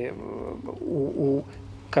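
A man's voice in a pause of his talk: a low, drawn-out hesitation sound, then a few short murmured syllables before he speaks clearly again.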